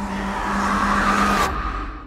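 Horror-film sound design: a loud, noisy swell over a steady low hum that builds and then cuts off abruptly about one and a half seconds in.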